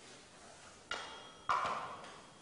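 Two sharp clinks of hard objects being handled on a desk, about half a second apart, the second louder; the first rings briefly.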